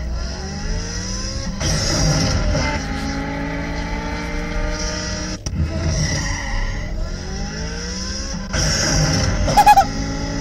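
Mazda 323 accelerating twice, the engine pitch rising each time. Each run ends in a loud whooshing hiss at the gear change: turbo blow-off sound effects played from an iPod in time with the shifts. A short, high, fluttering chirp comes near the end.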